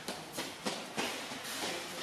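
Background noise in a large shop, with a few soft footsteps on a hard floor.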